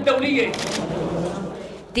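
Background voices mixed with a rapid patter of clicks, fading toward the end.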